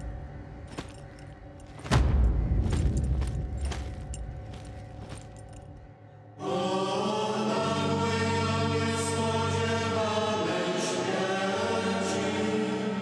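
Scattered metallic clicks and knocks, the clinking of the soldiers' metal armour and the handling of the heavy wooden cross, with a heavy low thud about two seconds in. About six seconds in, a choir begins singing long held notes.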